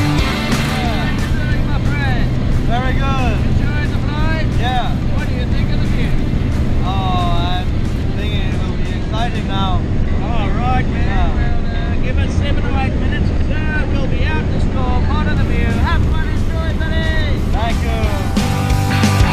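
Steady engine and cabin drone of a small single-engine plane in flight, with voices talking over it.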